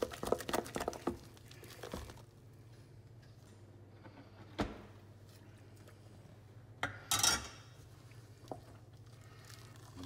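A wooden spoon beating mashed potatoes in a stainless steel saucepan, with quick wet squelching strokes for the first two seconds. Then a sharp click about halfway and a short splashy rush near seven seconds as the hot milk and cream mixture goes into the mash.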